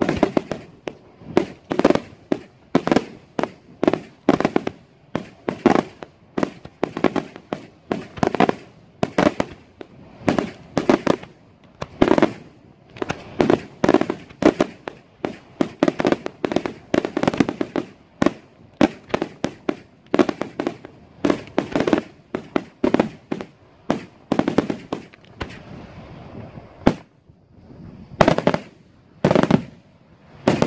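Daytime aerial fireworks: shells bursting in a fast, uneven run of loud bangs, two or three a second. Near the end there is a short lull, then a few more bangs.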